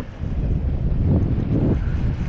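Wind buffeting the microphone in a steady low rumble, with choppy water sloshing around it.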